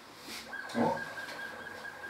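A man's short, questioning 'o?' vocal sound about a second in, a brief grunt-like hum rather than words. A faint steady high tone comes in about half a second in and holds.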